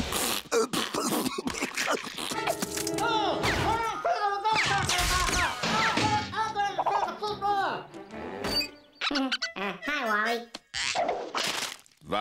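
Cartoon soundtrack of music and comic sound effects: a run of sharp knocks and thuds, then wavering, pitched noises and voice-like sounds without words, and more knocks near the end.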